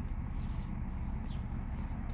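V6 engine of a Chrysler Town & Country minivan idling with a steady low hum.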